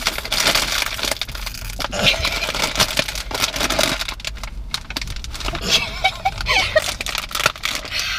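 Crinkly plastic snack bag crackling and rustling in uneven crackles as it is tugged, squeezed and pulled at in an effort to tear it open.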